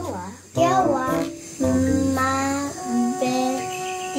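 A young girl's voice singing playfully, with long held notes in the second half, over light background music.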